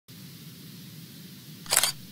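Intro sound effect for a news logo: a faint low hum, then a single short, shutter-like snap of noise about three-quarters of the way in as the logo appears.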